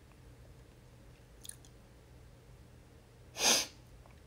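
Quiet room tone, then one short, sharp burst of breath from a person, about three and a half seconds in. A faint tick comes about a second and a half in.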